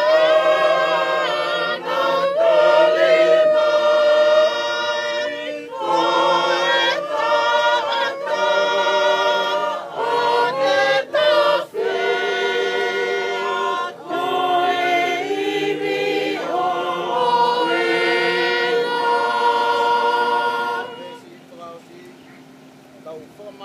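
A choir of many voices singing unaccompanied in long sustained phrases, stopping near the end.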